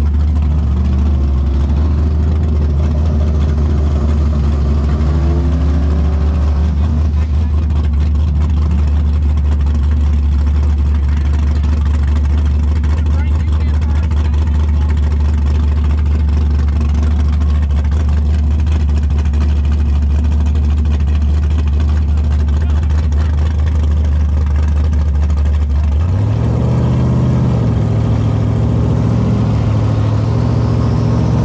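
Chevrolet Camaro drag car's engine idling loudly at the starting line with a steady deep rumble. About 26 seconds in, the revs step up and hold at a higher, busier idle.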